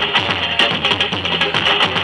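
Samba-school band playing without singing: plucked strings over percussion with a steady, even beat.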